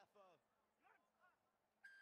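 A referee's whistle gives one short, sharp blast near the end, the loudest sound here, signalling a penalty at the ruck.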